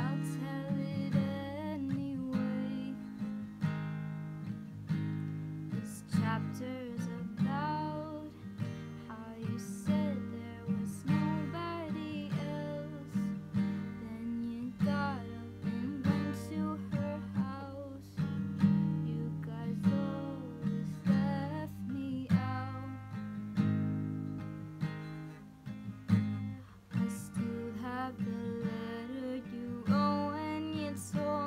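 Solo female voice singing a slow pop song over her own strummed acoustic guitar chords.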